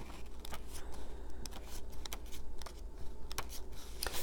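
Pages of a small paper card guidebook being leafed through: soft paper rustling with scattered small ticks and clicks while the entry for a card is looked up.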